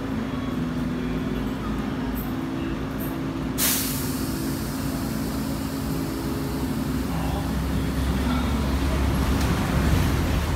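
A large diesel vehicle, most likely a bus, idling steadily, with a sudden loud hiss of air brakes about three and a half seconds in. A deeper engine rumble builds in the last few seconds.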